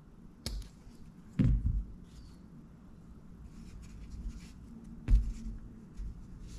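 Scissors cutting a pipe cleaner and being put down on a table: a sharp click about half a second in, a louder knock a second later and another near the end, with faint rustling of hands handling a soft plastic bait between.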